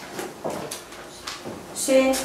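Quiet classroom sounds: scattered light knocks and shuffling, with faint murmuring. A voice starts up near the end.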